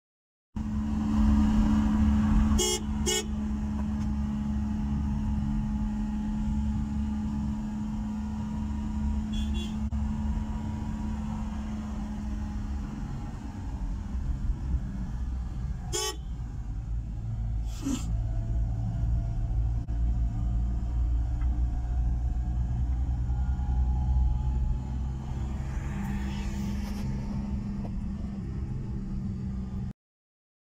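Car engine and road noise heard from inside the cabin while driving, a steady low drone whose engine hum shifts pitch a few times. Four brief sharp sounds cut through it: two close together about three seconds in, and two more around sixteen and eighteen seconds.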